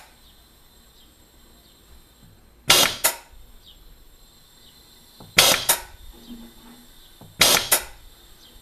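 MPS Technology C2 air-driven gas booster pumping a small cylinder up toward 220 bar. Each piston stroke gives a sharp double blast of exhausted drive air, three times about two and a half seconds apart, with a faint hiss in between.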